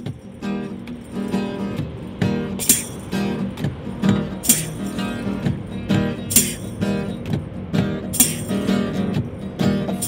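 Acoustic guitar strummed in a steady rhythm, playing a song's instrumental intro, with a tambourine struck about every two seconds.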